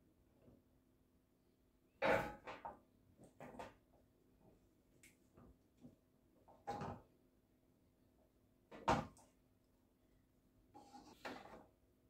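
A wooden spatula knocking against a cooking pot as boiled turkey wings are lifted out and set down on a metal oven tray: a handful of faint, separate knocks, the clearest about two seconds in and near nine seconds.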